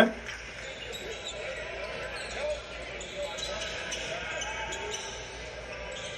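Audio of a basketball game in a gym, played back at moderate level: a ball bouncing on the court with faint crowd voices.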